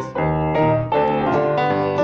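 Piano and acoustic guitar playing a blues tune, an instrumental bar between sung lines, with a run of struck piano notes.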